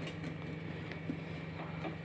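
A steady low hum, with a few faint soft taps from a hand pressing sesame seeds into batter spread in a steel plate.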